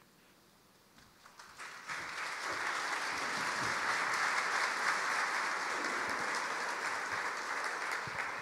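Audience applauding: a few scattered claps about a second in build into steady applause that eases off slightly near the end.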